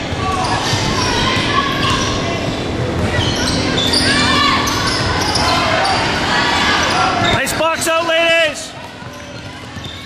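Basketball game sounds echoing in a gym hall: the ball bouncing, footsteps and spectators' voices. About seven and a half seconds in comes a short cluster of high squeals, after which the level drops.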